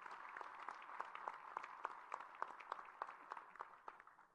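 Audience applauding: many hands clapping in a steady patter that thins out near the end.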